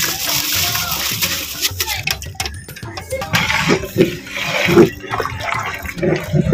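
Raw basmati rice poured in a stream into a large pot of boiling water and mutton masala, a rushing, splashing hiss, with background music playing.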